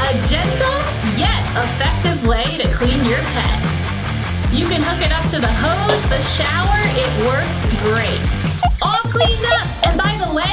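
Water spraying from a Waterpik Pet Wand Pro dog-shower wand onto a wet Labrador's coat, a steady hiss, with background music playing over it.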